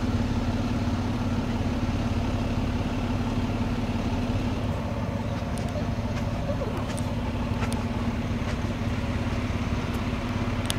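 Tow vehicle's engine running at low speed, a steady low hum heard from inside the cab, with a few faint ticks in the second half.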